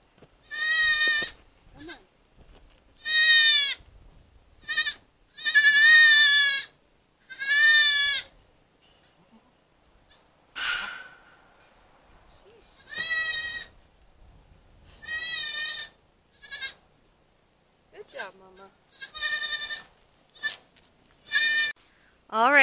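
Newborn goat kids bleating over and over, about ten high, wavering cries with short pauses between them. There is a brief rustling burst near the middle.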